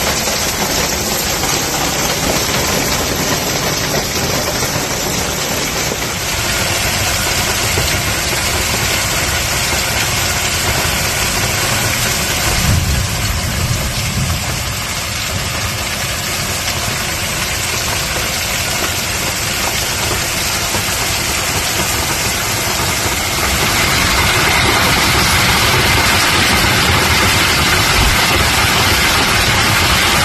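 Heavy rain and hail coming down hard in a cloudburst, a dense steady noise that grows louder in the last several seconds.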